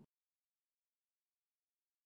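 Silence: the audio drops out completely at the start, with no sound at all.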